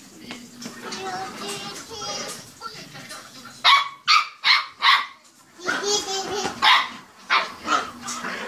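Small dog barking: a quick run of four sharp barks about halfway through, then a few more near the end.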